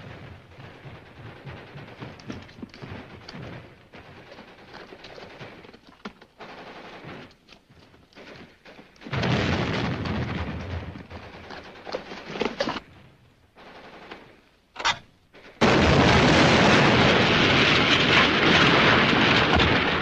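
Battle sound effects on a 1950s film soundtrack: scattered gunfire, then demolition charges going off as loud explosions. The first blast comes about nine seconds in, and a long, very loud spell of blasts and gunfire starts a few seconds before the end.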